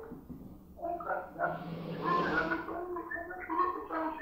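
A listener's voice speaking faintly over a telephone line during a phone-in, in short broken phrases, with a breathy swell of noise about halfway through.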